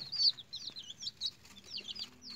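Young chicks peeping: short, high chirps that rise and fall, several a second.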